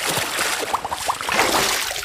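Water splashing and churning, a continuous rushing hiss, as a heavy catch thrashes at the end of a taut fishing line in the sea. A few short rising bubbly chirps come about a second in.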